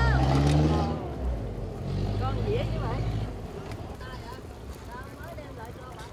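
A boat engine running with a low, steady hum. It is loudest in the first second, returns from about two to three seconds in, then fades out. Faint voices chatter in the background.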